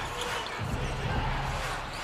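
Basketball being dribbled on a hardwood court during live play, over a steady background of arena noise.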